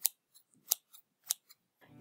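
Scissors snipping shut three times: short, sharp snips about half a second apart.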